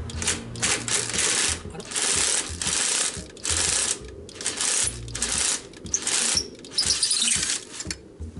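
Cordless impact tool hammering on a bolt at the scooter's rear wheel assembly, in repeated rattling bursts of under a second to about a second with short pauses between, as the fastener is worked loose.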